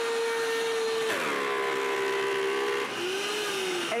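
DASH Chef Series 1400-watt blender's motor running on high through thick peanut butter. Its pitch drops about a second in and again near the end as the load pulls the motor down. This low "dash growl" is normal for the 2¼-horsepower motor as it finishes the batch and is nothing to worry about.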